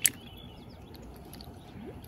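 A single sharp click right at the start, then faint quiet ambience with small, distant bird chirps.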